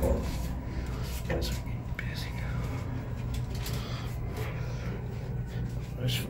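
Steady low hum inside a glass hydraulic elevator car as it rides down, with faint voices.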